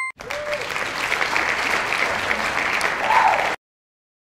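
Recorded applause sound effect from a children's learning app, marking a completed exercise with a full three-star score; it cuts off suddenly about three and a half seconds in.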